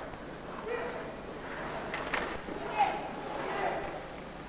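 Ice hockey arena sound during live play: a crowd murmur with scattered shouts, and a sharp knock about two seconds in, like a puck or stick striking.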